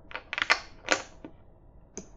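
Computer keys clicking: a quick run of several clicks about half a second in, then a single click just before the one-second mark and a faint one after it.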